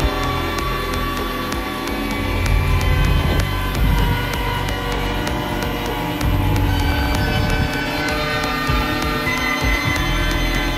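Progressive techno played in a DJ set: a steady electronic beat with a heavy bassline under held synth tones.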